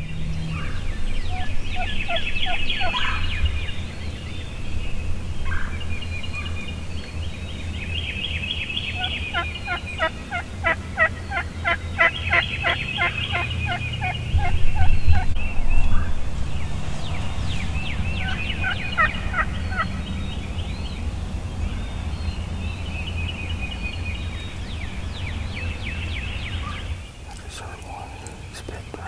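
Wild turkey gobbling again and again, in rapid rattling runs of notes, over a steady low rumble. The loudest gobbles come about halfway through.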